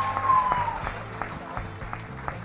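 Applause from an audience and the people on stage over background music with a steady bass line, a held note in the music fading out within the first second.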